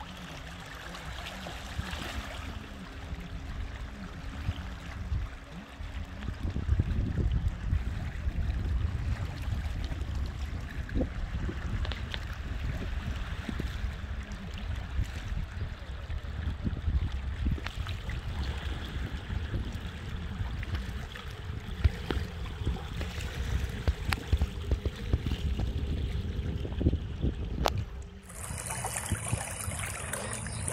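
Wind buffeting the microphone with a low rumble over small waves lapping against a muddy, rocky riverbank. The wind gets stronger about six seconds in.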